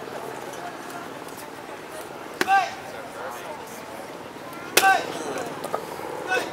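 Two sharp cracks of karate strikes about two and a half seconds apart, each with a short loud kiai shout, as a partner holds up a board to be struck.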